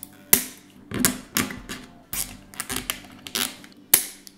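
Irregular sharp plastic clicks and taps, about ten over a few seconds and some in quick clusters, as nylon cable ties are threaded and pulled through holes in a 3D-printed plastic frame to hold an LED strip.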